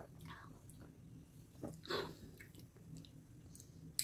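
Faint mouth sounds of people drinking and tasting: swallowing from glass bottles and a few short lip and tongue smacks, the clearest about two seconds in.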